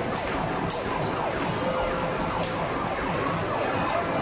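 Arcade basketball machines' electronic sound effects: many overlapping falling tones, with sharp knocks of basketballs striking the rim and cage every second or so as the shots go in.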